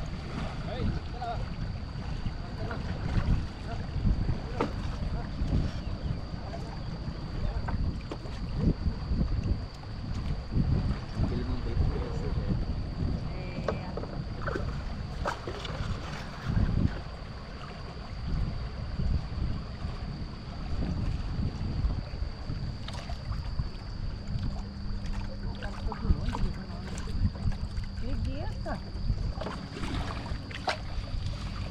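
Water lapping and splashing against a bamboo raft drifting down a river, with wind rumbling on the microphone. A thin steady high tone runs underneath.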